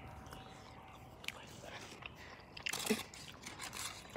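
Faint, scattered clicks and rustles close to the microphone as the phone is handled against clothing, with a short cluster of them and a brief mouth sound about three seconds in.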